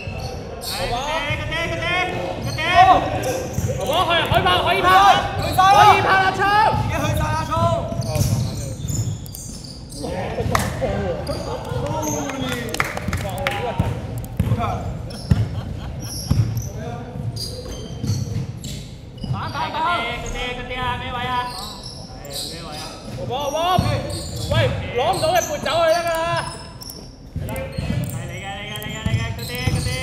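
A basketball being dribbled and bouncing on a hardwood court in a large sports hall, with repeated short thumps and players' voices calling out over them at intervals.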